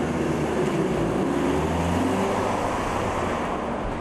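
A Lifan Solano sedan driving past on an asphalt street: a steady engine hum and tyre noise that ease off slightly near the end as it moves away.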